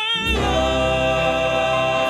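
Music: a male gospel vocal quartet singing. A single held note with vibrato gives way about a third of a second in to a full, sustained chord with a deep bass at the bottom.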